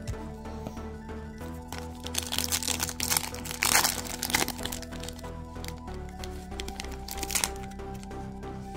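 Foil trading-card pack being torn open and crinkled by hand, crackling from about one and a half seconds in to about four and a half seconds, and again briefly near the end. Quiet background music plays underneath.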